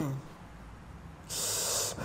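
A short, loud hiss of about half a second, about a second and a half in, after a quiet stretch. It is preceded at the very start by the tail of a falling voice-like sound.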